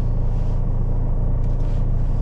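Steady low rumble of a car heard from inside its cabin, the engine and road noise of the car driving on.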